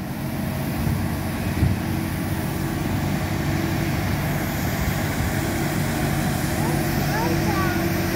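Street sweeper truck working the gutter as it approaches: a steady engine hum with a steady whine over it, growing a little louder over the first second or so.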